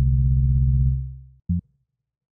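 Low, pure-toned bass note from the Pilot software synthesizer, sequenced by Orca. It holds for about a second and fades away, and a short low note follows about one and a half seconds in.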